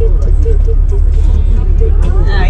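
Steady low rumble of a coach bus on the move, heard inside the passenger cabin, with people chatting faintly over it.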